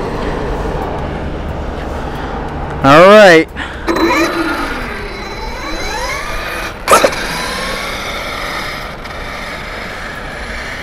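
Brushless electric motor of a Losi LST 3XL-E 1/8-scale monster truck whining and rising in pitch as the truck accelerates away, about four to six seconds in. A short, loud voice about three seconds in, a sharp click near seven seconds, and wind rumbling on the microphone throughout.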